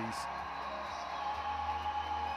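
Music with a few steady held notes, over a low steady hum.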